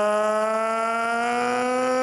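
A ring announcer's voice over the arena PA, holding one long drawn-out vowel while announcing the decision of a title fight; the pitch rises slightly as it is held.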